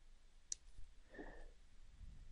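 Near silence with a single sharp click about half a second in, then a faint short hum.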